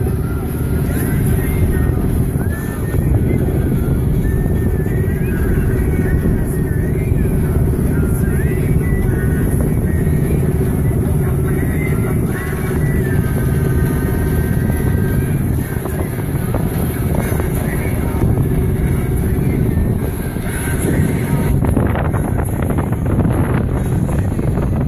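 Steady low rumble of a boat under way, engine and wind on the microphone, with no break. Over it, for roughly the first two-thirds, runs a faint wavering melodic line or distant voice.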